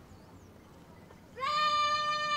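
A drawn-out shouted drill command on the parade ground, starting about one and a half seconds in: a single loud, high call that rises briefly and then holds one steady pitch.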